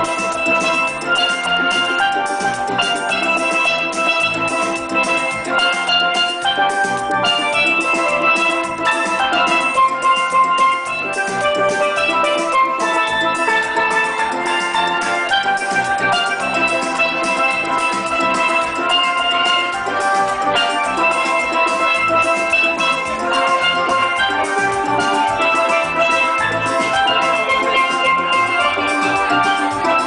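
Steel band playing: several steelpans ring out a melody and chords over a steady beat of drums, with no break.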